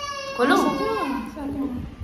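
A high-pitched voice, drawn out at one pitch and then sliding up and down through a short spoken question.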